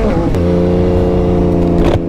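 Motorcycle engine heard from on the bike while riding: the note drops quickly about a quarter second in, like a gear change, then holds at steady revs.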